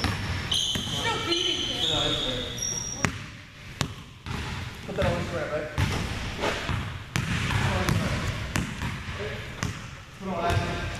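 A basketball bouncing on a hardwood gym floor, a few separate knocks, with sneakers squeaking high and sharp in the first few seconds.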